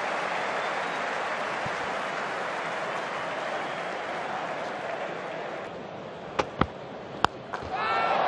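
Cricket stadium crowd cheering and applauding a boundary, the noise slowly dying away. A few sharp clicks come near the end.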